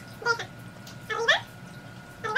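Small fluffy dog whining: a few short, high, upward-gliding whimpers, the loudest a little over a second in.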